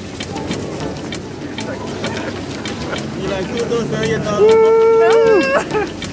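Several voices of people walking together, then one long held shout of about a second near the end, steady in pitch and dropping off as it ends.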